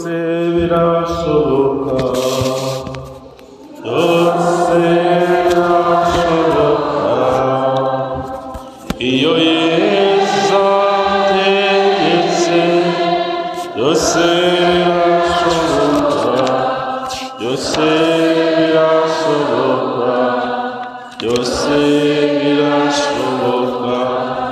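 Voices singing a slow, chant-like religious hymn in long held phrases of a few seconds each, with short pauses between them.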